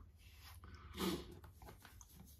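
Quiet room tone with one short breathy vocal sound from the man about a second in.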